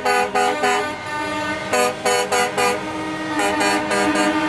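Truck air horns honking in groups of short toots, with a longer held horn tone near the end.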